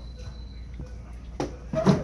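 Low steady hum, then a short, loud vocal sound near the end.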